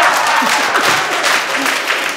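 Applause with laughter in a studio, loudest at the start and dying down toward the end.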